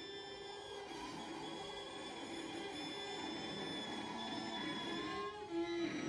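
String quartet of two violins, viola and cello playing sustained, overlapping bowed notes in a dense held texture, with a brief louder accent near the end.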